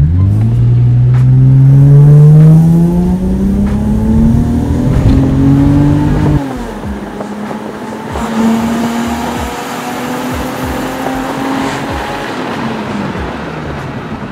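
Toyota Altezza's naturally aspirated 2-litre inline-four through a Magnaflow exhaust, heard from inside the cabin, revving up steadily under acceleration for about six seconds. Its pitch then drops sharply and it pulls on at a steadier note before easing off near the end.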